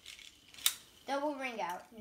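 Small plastic clicks of Beyblade tops and launchers being handled, one sharp click about two-thirds of a second in, followed by a person's voice from about a second in.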